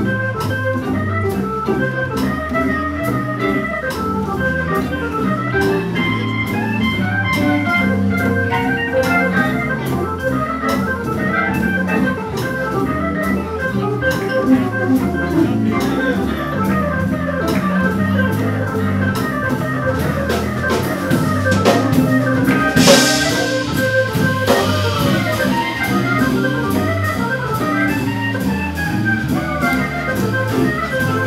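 Hammond organ soloing in a live jazz combo, playing quick runs of notes, with drums keeping time and a cymbal crash about three-quarters of the way through.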